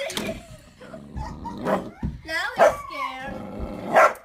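A dog whining in excitement at a squirrel just outside the window glass, a run of high cries sliding up and down in pitch past the middle.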